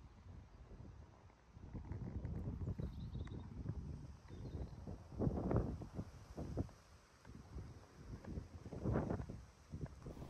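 Wind rumbling on the microphone in uneven gusts, with footsteps on a hard paved path as someone walks along.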